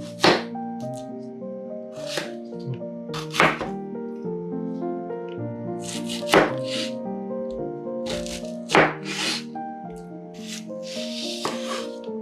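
Chef's knife cutting through a red onion and knocking on a wooden cutting board: separate, crisp cuts, about eight of them, one every two to three seconds. Background music plays throughout.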